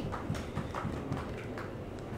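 A few light, irregular taps and knocks on a tabletop.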